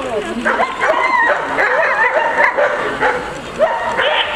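German Shepherd Dog giving repeated high-pitched barks and whines at the protection helper, each call bending up and down in pitch.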